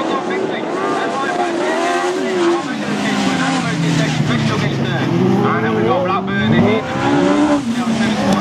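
Several autograss race car engines running hard at high revs as the cars pass, their pitches rising and falling and overlapping as the drivers accelerate and lift.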